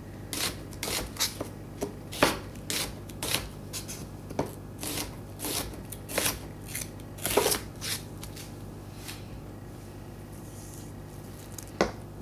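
Chef's knife chopping diced onion on a wooden cutting board: a quick, uneven run of blade strikes, about two a second, that stops about eight seconds in. One more knock comes just before the end.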